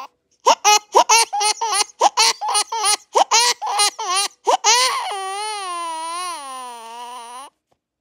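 Infant crying: a quick run of short sobbing cries, about four or five a second, then one long wail that falls in pitch and cuts off suddenly near the end.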